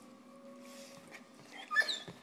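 A dog whimpering: a faint thin whine, then a short, sharp yip near the end.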